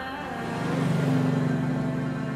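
A van's engine driving past, swelling to its loudest just after a second in and then fading, over background music.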